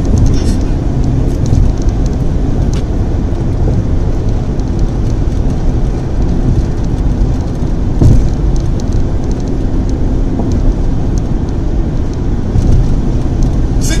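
Steady low rumble of tyre and engine noise inside a car cruising at highway speed, with one brief thump about eight seconds in.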